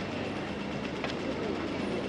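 A street tram running on its rails, a steady rumble over general street noise, with a single sharp click about a second in.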